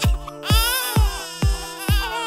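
Babies wailing and crying over background music with a steady beat, about two beats a second. The crying comes in about half a second in.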